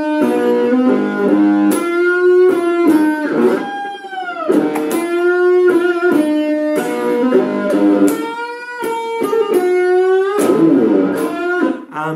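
Stratocaster-style electric guitar playing a bluesy single-note riff in G, with sustained notes and string bends; a bent note glides in pitch about four and a half seconds in.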